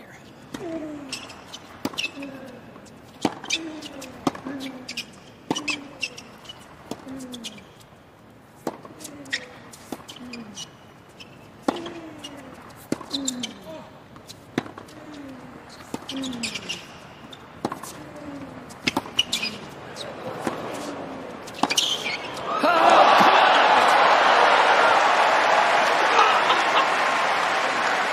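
Tennis rally on a hard court: about eighteen shots hit back and forth roughly once a second, most with a player's short falling grunt on the stroke. About 22 seconds in, a loud crowd roar and applause break out, greeting the winner that ends the point.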